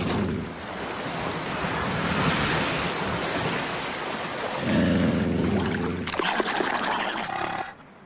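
Cartoon sound effect of a great wave of water rushing and surging through a street, with a deeper rumbling surge about five seconds in. It cuts off shortly before the end.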